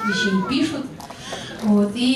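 People talking in a hall. Near the start comes a brief, high-pitched voice-like call that rises and then falls in pitch.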